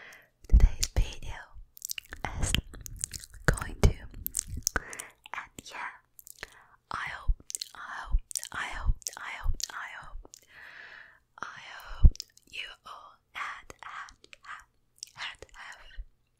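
Wet mouth clicks and smacks right on a foam-covered Blue Yeti microphone, with heavy low thumps from contact or breath on the mic over the first few seconds. After that comes close, breathy whispering into the mic, broken by more mouth clicks.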